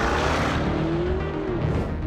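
Lamborghini Urus twin-turbo V8 engine revving under hard acceleration, its pitch climbing and then falling away near the end as the car passes, over background music.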